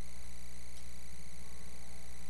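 Steady electrical mains hum with a faint buzz and hiss on the audio feed, with nothing else happening.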